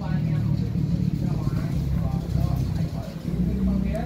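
A steady low engine rumble, with people talking in the background.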